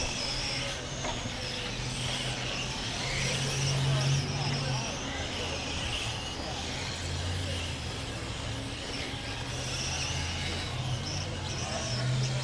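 Small electric RC touring cars (M-chassis, 21.5-turn brushless motors) racing: a high motor and gear whine that comes and goes as cars pass, over a steady low hum.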